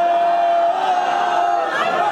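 Live reggae performance in a club: one long steady note held for about a second and a half over crowd noise, then breaking off into crowd chatter.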